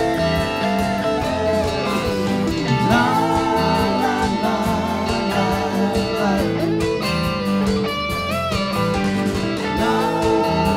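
Live rock band playing an instrumental passage in A minor: electric guitar lines bending and wavering over strummed guitar, bass and electronic drums with a steady beat.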